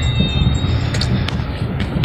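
Road and engine noise inside a moving Hyundai car: a steady low rumble, with a few faint clicks.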